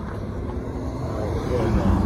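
Road traffic: cars passing on the road beside a pedestrian crossing, a steady low rumble that grows louder in the second half.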